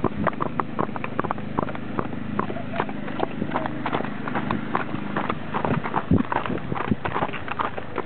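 Horses trotting on a paved road, their hooves clip-clopping in a quick, uneven rhythm of sharp strikes.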